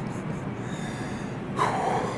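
A man's sharp intake of breath near the end, over a steady low background hum.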